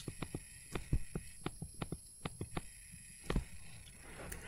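Stylus tapping and clicking on a tablet screen while handwriting letters, a faint run of light, irregular clicks, a few louder than the rest.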